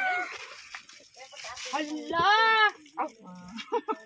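A short, high-pitched vocal cry, rising then falling in pitch, about two seconds in, among low voices.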